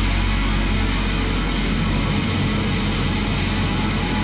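Live synth-rock band playing: electric guitar, synth and bass hold a dense, sustained wall of sound without distinct drum hits.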